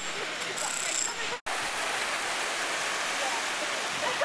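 Steady rushing noise of outdoor street ambience on a handheld camera's microphone, with faint voices in the first second. It drops out abruptly for an instant about a second and a half in at an edit cut, then carries on.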